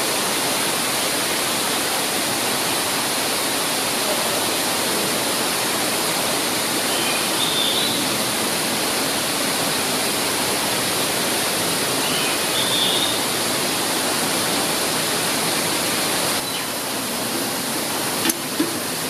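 Waterfall: a steady rush of water splashing down over rocks. It drops a little in level near the end.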